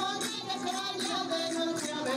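Regional folk music performed live: voices singing over a steady rhythmic percussion beat.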